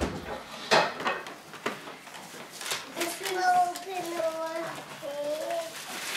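A young child's high-pitched voice, talking or babbling without clear words, through the second half, with a few short crinkles of wrapping paper in the first half.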